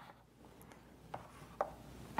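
A few faint clicks of magnetic player counters being set onto a tactics board, about half a second apart.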